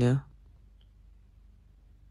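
A man's voice saying "you know?" in a low pitch, cut off after a quarter second, then near silence with faint room tone and one faint click a little under a second in.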